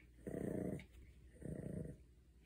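A Pomeranian growling low twice, each growl about half a second long: a warning growl, guarding his treat toy from the hand reaching for him.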